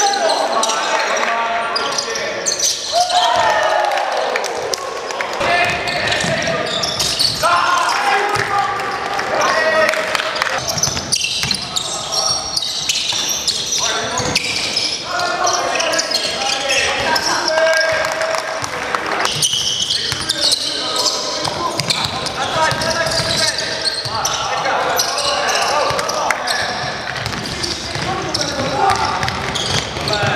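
Basketball game in a sports hall: the ball bouncing on the court among short impacts, with players' voices calling and shouting throughout.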